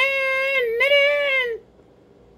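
A high-pitched voice singing two long held notes without words, which stops about a second and a half in.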